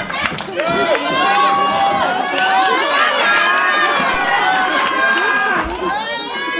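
Wrestling crowd shouting and calling out, many overlapping voices held and rising, with a few sharp knocks from the ring.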